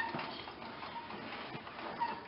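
Faint, scattered clicking and ticking from a 1953 Massey-Harris Pony tractor's drivetrain as the jacked-up rear wheel is turned by hand in gear, turning the engine over; the engine is free, not seized.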